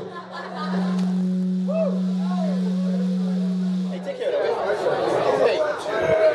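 A steady low hum held for about four seconds, then cutting off, followed by crowd chatter.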